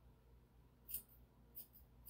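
Grooming scissors snipping a puppy's coat close to its ear: two short, crisp snips, about a second in and again near the end, over near silence.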